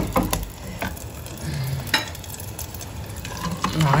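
Egg tortilla frying in olive oil in a pan, a steady sizzle, with a few sharp clicks against the pan; the loudest come at the very start and about two seconds in.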